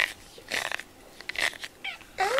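Dry rustling scrapes of shed cat fur being pulled off a pink rubber grooming brush by hand, in two short bursts about half a second and a second and a half in. A sharp click comes right at the start.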